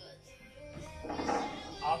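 Background music begins, with a man's voice starting to speak near the end.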